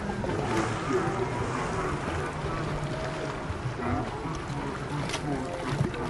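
Children's voices chattering and calling out over each other at a busy swimming pool, with water sloshing and splashing around a canoe full of kids. There are a few short splashes or knocks near the end.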